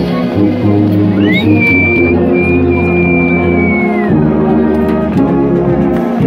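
Marching brass band playing held chords over a steady bass line. A single high whistle-like tone rises about a second in, holds for roughly three seconds and falls away.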